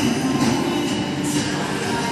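Background music with a steady beat, about two beats a second, playing through the hall.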